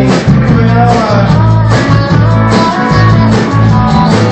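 A live rock band playing loud: electric guitars over bass and drums, with a voice singing.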